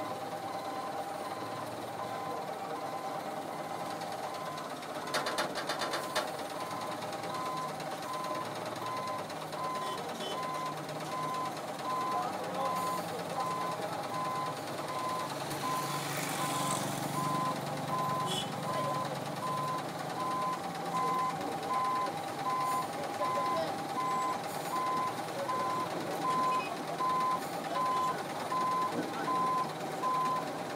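Caterpillar 950 wheel loader's reversing alarm beeping steadily in a regular on-off rhythm over its diesel engine running. A motorcycle passes about halfway through.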